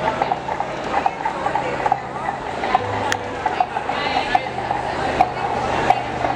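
Steady rhythmic clacking, about two sharp clicks a second, over a background murmur of voices.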